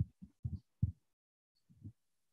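A pause in a man's speech over a video call: mostly dead silence, broken by four or five short, faint, low murmurs from the speaker, the last near the end.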